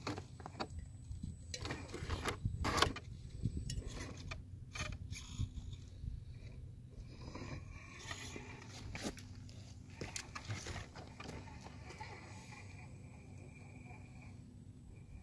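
Axial SCX10 II scale RC rock crawler's electric drivetrain running as it climbs rock, with scattered clicks, knocks and scrapes of the tyres and chassis on the stone, busiest in the first half.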